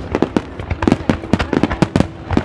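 Fireworks going off: a rapid, irregular run of sharp pops and cracks, about six a second.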